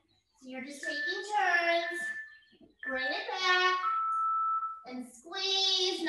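Music with a high-pitched voice singing, holding long notes between short phrases, with two brief pauses.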